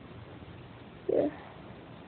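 Quiet room hiss, broken about a second in by a single short spoken "yeah".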